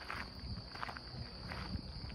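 Footsteps of a person walking outdoors at about two steps a second, over a faint steady high-pitched tone.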